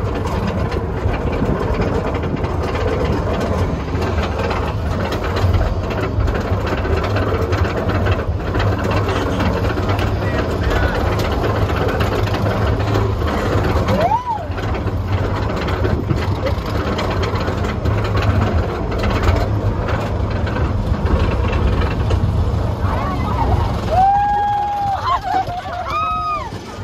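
Roller coaster train climbing its lift hill: a steady low mechanical rumble with rapid clattering from the track. Near the end, as the train crests the top, riders let out wavering screams and whoops.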